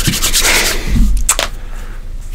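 Hands rubbed together briskly, a dry rapid swishing that stops a little under a second in, followed by one short sharp crackle.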